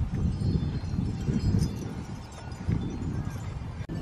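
Metal wind chimes hanging in a tree, tinkling faintly over a low rumble of wind on the microphone.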